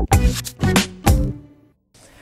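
Electronic intro jingle: a few pitched, percussive beat hits in quick succession that die away about a second and a half in, leaving the jingle's end.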